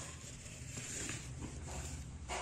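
Faint rustling and scraping of cardboard as a jar of honey is slid out of its box and corrugated liner, over a low steady hum.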